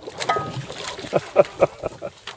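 Hooked speckled trout splashing at the surface beside the boat as it is brought to the net: a few short, irregular splashes.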